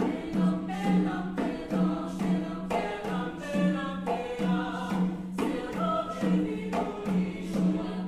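A choir singing, with a low note pulsing about twice a second beneath the moving voices.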